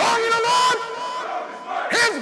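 A crowd of many voices shouting together, loud, swelling again near the end.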